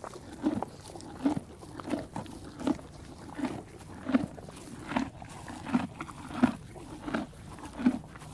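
Zebra making a steady run of short, low sounds, about one and a half per second, evenly spaced.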